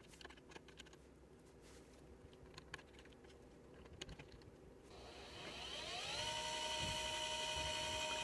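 A few faint clicks of a screwdriver working a screw terminal. About five seconds in, the electric motor under the Modbus motor controller starts up with a rising whine that levels off into a steady whine of several pitches by about six seconds. The start is the sign that the controller is now receiving valid commands once the 120 ohm terminating resistor is on the RS-485 bus.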